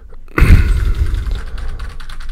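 Rapid typing on a computer keyboard: a heavy thump about half a second in, then a quick run of keystrokes.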